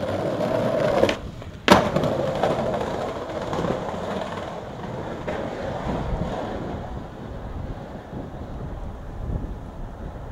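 Skateboard wheels rolling on concrete. The rolling drops out for about half a second, then comes a single sharp clack, and the rolling carries on, slowly fading.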